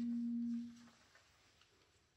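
A steady, pure single note, the last of a rising series of starting pitches given to the choir, held for about the first second and then cut off, leaving quiet room tone.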